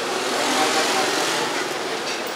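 A vehicle passing on the street. Its noise swells about half a second in and fades again, over a murmur of voices.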